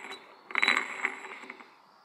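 Hydraulic pump drive gear from a McCormick B450 tractor turned by hand, spinning and clattering on its shaft: a burst of metallic clicks and ringing about half a second in, dying away over the next second. The gear has come detached from its shaft or broken off.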